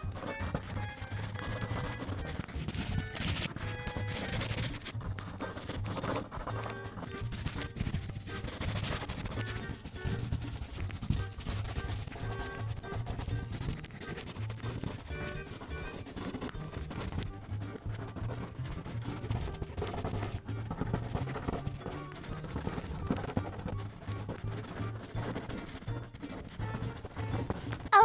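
Soft background music over the continual rapid scratching of a wax crayon being rubbed back and forth on paper.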